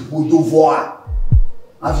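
A voice speaks briefly, then about a second in come two deep, short thumps close together, a heartbeat-style sound effect. Speech resumes near the end.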